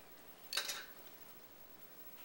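A brief soft rustle, about half a second in, as a plastic tail comb is drawn through wet hair on a mannequin head.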